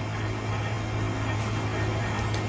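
Steady low hum under an even hiss, with nothing else happening.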